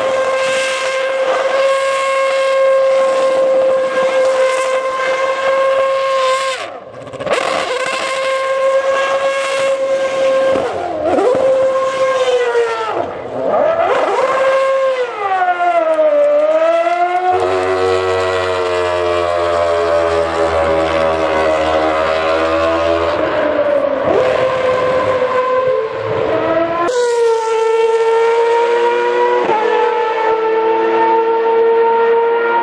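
Red Bull Racing Formula 1 car's 2.4-litre V8 engine, held at high steady revs, then swinging up and down in pitch while the car spins donuts in tyre smoke. About three seconds before the end the revs jump back up to a steady high pitch.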